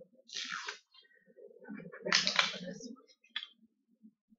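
Plastic screw cap of a glass hot sauce bottle being twisted open: a short rasping scrape, then a louder one about two seconds in, with a few light clicks.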